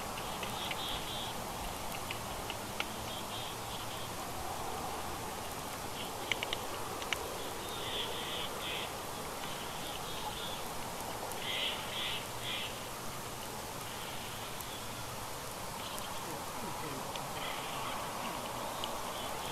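Small wild birds calling in short clusters of rapid high notes every few seconds, with a few sharp clicks, over a steady background hiss.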